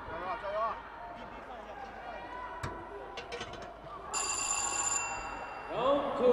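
Boxing ring bell ringing once to signal the start of round 2: a steady tone of about a second that stops abruptly, among voices in the hall.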